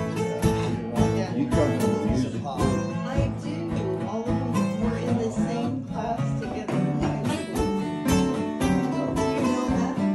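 Acoustic guitars strumming chords together in a steady country-style folk tune.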